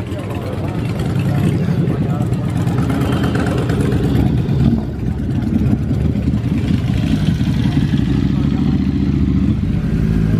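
Car engine idling steadily, with voices in the background.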